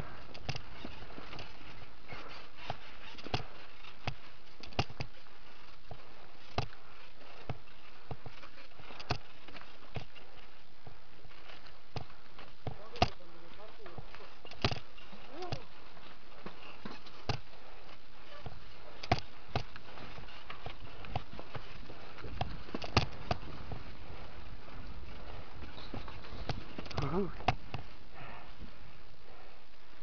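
Mountain bike descending a rocky dirt trail, heard from a camera mounted on the bike: a steady rush of wind and tyre noise with frequent sharp clacks and rattles as the bike jolts over rocks and roots.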